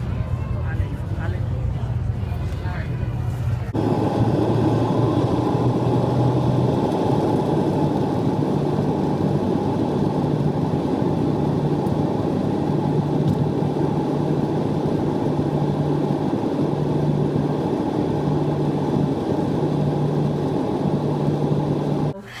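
Jet airliner cabin noise at a window seat during the climb after takeoff: a steady rush of engine and air noise with a low drone that comes and goes. It cuts in suddenly about four seconds in, after a few seconds of low engine hum with faint voices.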